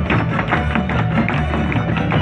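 Lively Mexican folk dance music with strummed strings, over the quick, rhythmic stamping of folklórico dancers' shoes on the stage (zapateado).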